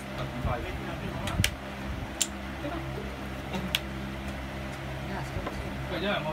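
Three sharp clicks of cards and plastic power markers being set down on a playmat, over a steady low hum.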